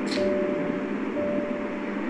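Steady background hum and hiss with a few constant tones, with a short, brief hiss just after the start.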